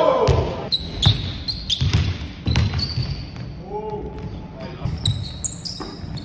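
Basketball bouncing on a hardwood gym floor in irregular thumps, with brief high sneaker squeaks. Players' voices call out at the very start and again about four seconds in.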